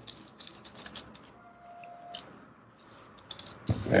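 Faint handling noise from gloved hands kneading soft dough on a stainless steel worktop: light, scattered clicks and rustles, with a louder knock near the end.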